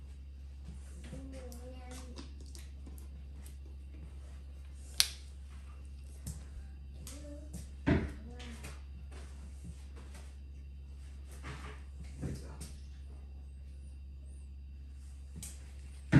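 Quiet kitchen room tone with a steady low hum, broken by scattered light clicks and knocks: a sharp click about five seconds in and a thump near eight seconds. Faint distant voices come through now and then.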